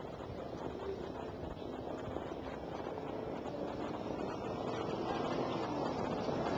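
Racetrack background noise while the harness field moves up behind the mobile starting gate: a steady rushing noise that slowly grows louder, with faint distant tones.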